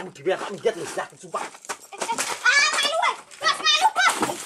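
Excited voices of a man and children, crying out and shouting, louder and higher-pitched in the second half.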